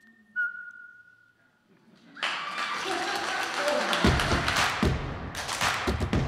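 The last sung note of an a cappella vocal ensemble cuts off, then a single clear whistled note is held for about a second. After a short hush the audience applauds from about two seconds in, with low thumps under the clapping.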